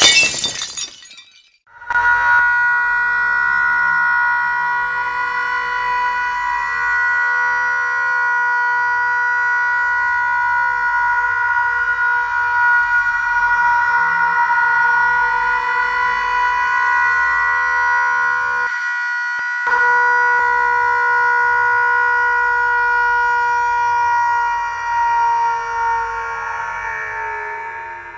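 A sudden loud burst, then a loud, steady high-pitched tone with overtones held unbroken for about 26 seconds, with one brief dip past the middle, fading out near the end.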